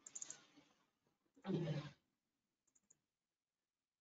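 A pause on a gated video-call microphone: a few faint clicks at the start, then one short, soft vocal sound from the lecturer about a second and a half in, with near silence around them.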